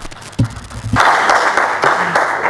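Audience applause breaking out about a second in, dense and loud, after a couple of low thuds.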